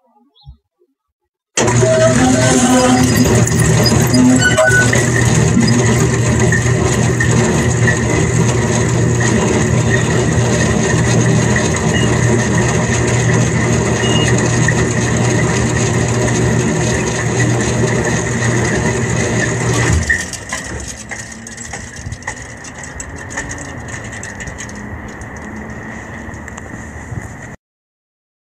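Linear electric slide gate opener running: a loud steady motor hum with a high whine over it. It starts abruptly and stops about two-thirds of the way through, leaving quieter background noise.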